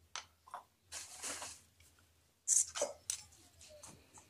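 A small blade cutting and scraping into the wall of a plastic drum around a marked hole. It comes in irregular rasping strokes, with a longer scrape about a second in and the loudest strokes about two and a half seconds in.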